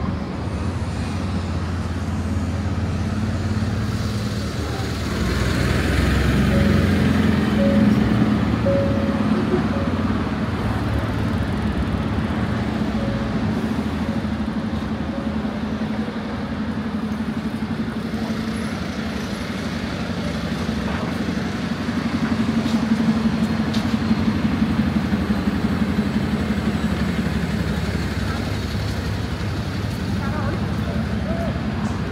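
Road traffic on a city street: car and lorry engines running as vehicles pass, with a steady low engine hum that grows louder twice, about six seconds in and again past twenty seconds.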